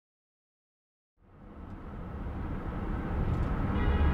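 Silence, then about a second in a low, steady car rumble fades in and grows louder, picked up by a dashcam inside a car stopped in traffic.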